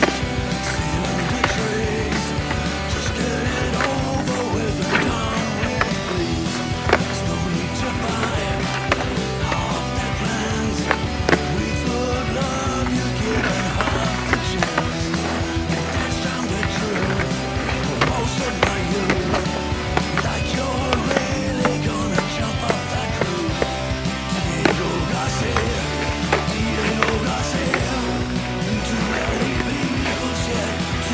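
Freestyle skateboard tricks on asphalt: the board's wheels rolling and the deck repeatedly clacking and slapping down, over continuous background music.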